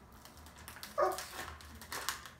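Plastic snack bag crinkling in the hands in a few short crackles, with one short, high, whining vocal sound about a second in that is the loudest thing heard.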